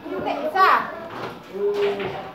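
A child's voice speaking and vocalising, with a sharply falling sound about half a second in and a short held note near the end.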